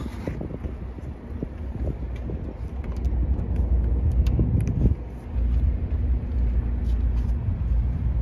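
Wind buffeting the phone's microphone outdoors: an uneven low rumble that grows stronger about three seconds in, over a faint steady low hum.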